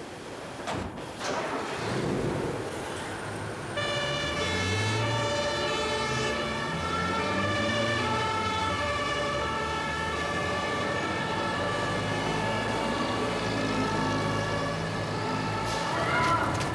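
A vehicle door shuts about a second in. About four seconds in, a German two-tone emergency siren (Martinshorn) starts and keeps alternating between its two pitches over the low running of the emergency vehicle's engine.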